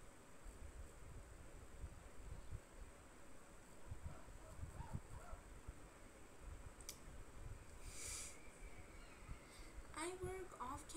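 Near silence in a small room, with faint low thumps from handling things on a desk, a single sharp click about seven seconds in and a short hiss about a second later.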